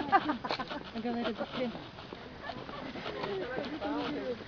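Faint, indistinct chatter of several people talking.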